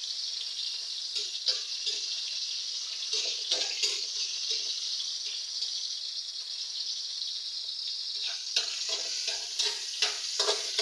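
Sliced onions and tomatoes sizzling steadily in hot oil in a steel wok, with a metal spatula scraping and stirring the pan a few times.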